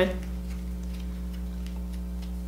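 A steady low hum with no other sound, just after the last syllable of a spoken word.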